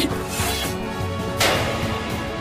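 Anime soundtrack music under battle sound effects: a sharp hit at the very start, a smaller burst about half a second in, and a louder crashing hit about a second and a half in.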